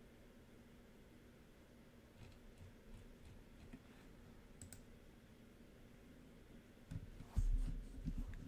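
Faint scattered computer mouse clicks, a handful over a few seconds, then a couple of louder low thumps near the end.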